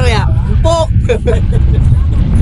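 Wind buffeting a camera microphone, a steady low rumble, with a person's voice calling out briefly in the first second or so.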